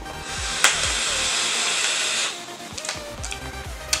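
A long drag on a box-mod e-cigarette: a steady airy hiss for about two seconds, then it stops. Faint background music underneath.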